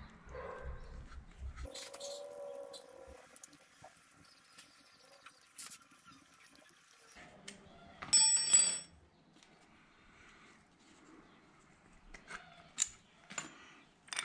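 Faint clicks and scrapes of a hex key and metal bolts as the two pad-retaining bolts are unscrewed from a motorcycle's front brake caliper, with one brief, bright ringing metallic sound about eight seconds in.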